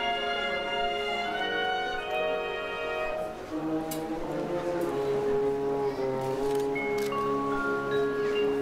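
Marching band music: slow, long-held chords that change every second or two, with mallet percussion from the front ensemble.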